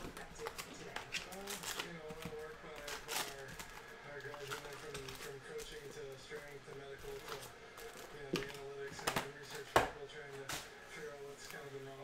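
Foil trading-card packs and their cardboard box being handled: scattered crinkles, taps and sharp clicks as the packs are pulled from the box and stacked, the loudest clicks about three seconds in and near ten seconds, over faint background voices.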